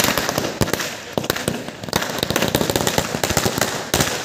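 Firecrackers going off in a rapid, irregular run of sharp cracks, with a few louder bangs among them.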